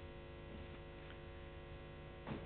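Faint, steady electrical mains hum with many overtones, a low buzz that holds unchanged.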